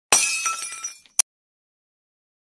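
Glass-shattering sound effect: a sudden crash with tinkling shards dying away over about a second, then one short sharp hit, after which the sound cuts to silence.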